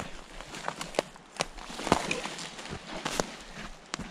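Footsteps crunching and snapping over dry twigs, pine needles and grass on a forest floor: an irregular series of crackles and clicks.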